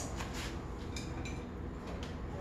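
Faint light taps and clicks as sliced carrots are tipped off a plate into a pot of curry, over a low steady hum.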